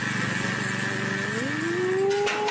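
A steel lattice transmission tower groans as it buckles and starts to topple: a drawn-out tone rising in pitch from about a second and a half in. An engine runs steadily underneath, joined by a thin steady high tone.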